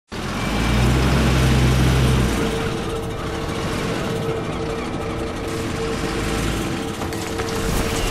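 Garbage compactor truck's engine running, with a deep hum for the first two seconds or so that then eases, and a steady whine underneath throughout.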